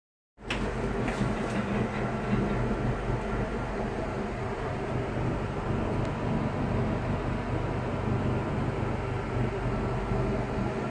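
Steady low mechanical rumble and hum inside a Ferris wheel gondola as the wheel turns, with a few light clicks about a second in.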